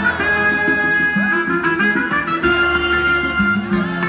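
Live Mizrahi band playing an instrumental passage, with no vocal: a held melody line over bass and drums.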